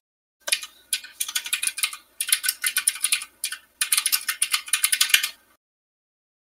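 Computer keyboard typing: rapid key clicks in three bursts, with short pauses about two and three and a half seconds in, stopping shortly before the end.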